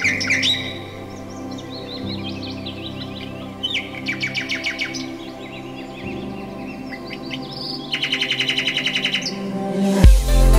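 Songbirds chirping, with a rapid even trill about four seconds in and another near the end, over soft sustained background music.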